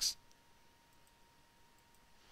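The tail of a spoken word right at the start, then near-silent room tone with a faint steady high tone and a couple of faint clicks.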